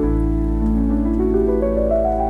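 Slow solo piano: a low bass note struck at the start and held while single notes climb one after another in a rising run, with the sound of steady rain underneath.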